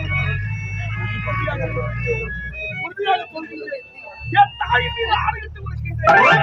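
Actors' dialogue through a stage loudspeaker system over held, organ-like keyboard notes; the low accompaniment drops out for about a second in the middle and comes back.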